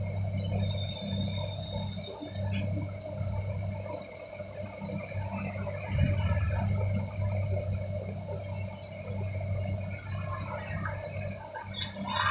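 A steady low electrical hum with a thin high whine above it, and small faint handling noises.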